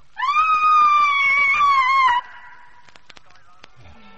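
A person's high-pitched scream, one loud cry held for about two seconds that drops slightly in pitch before cutting off.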